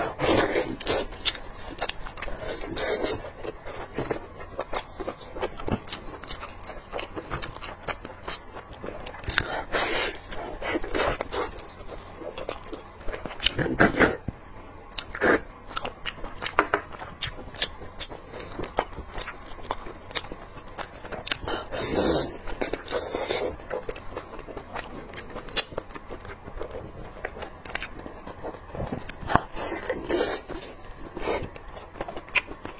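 Close-miked eating sounds of spicy braised lamb shank being chewed: a steady stream of irregular wet smacks and mouth clicks, with meat pulled from the bone by hand.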